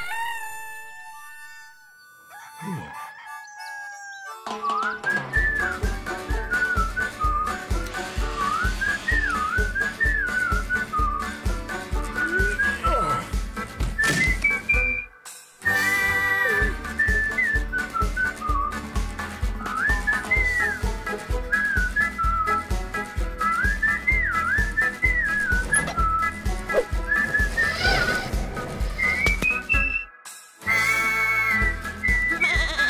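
A rooster's crow fades out in the first second. Then the show's upbeat theme music starts: a steady beat under a high, gliding melody that sounds whistled. It breaks off briefly about halfway through.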